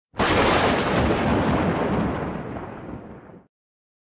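A sudden explosion-like boom with a deep rumble, a cinematic impact sound effect, that fades away over about three seconds and then cuts off.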